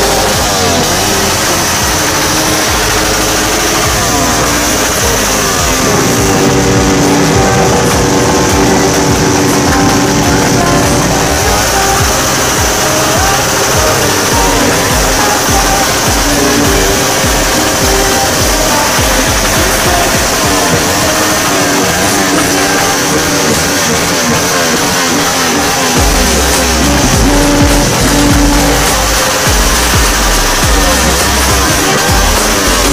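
Modified Suzuki Raider R150 Fi single-cylinder four-stroke engine with a loud open 'bomba' exhaust, revved again and again, its pitch wavering quickly up and down.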